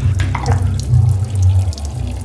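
Water running and splashing in a tiled washroom, over a steady low hum.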